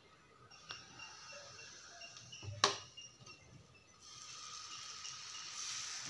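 A sharp knock about two and a half seconds in, then, from about four seconds in, dosa batter sizzling steadily on a hot cast-iron tawa as it is poured.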